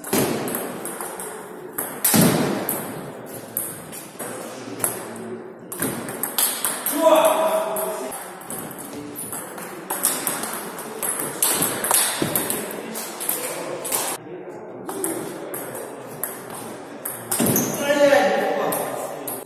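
Table tennis rallies: a celluloid-type ball struck by rubber-faced rackets and bouncing on the table, a quick run of sharp clicks in a large hall, with short pauses between points. Voices are heard now and then.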